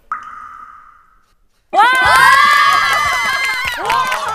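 A breathy hiss that fades out over about a second, the tail of a mouth imitation of a subway train. About a second later a group bursts into loud, shrieking laughter.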